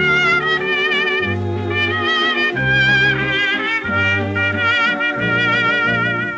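Instrumental introduction of a 1931 fox-trot dance-orchestra recording, played from a 78 rpm record: the melody instruments waver with vibrato over held bass notes that change about every second.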